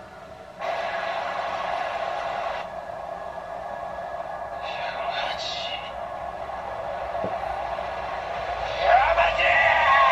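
Anime soundtrack with thin, band-limited sound: a sudden hiss-like burst of effects about half a second in, then a character's voice saying the name "Yamaji," louder near the end.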